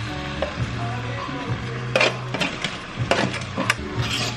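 Background music with kitchen sounds: a metal fork scraping roasted tomatoes off a foil-lined baking tray into a pan, with a few sharp clinks of metal about halfway through and near the end.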